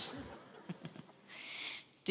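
A mostly quiet pause: a voice trails off right at the start, then faint low sounds and a short hiss about a second and a half in.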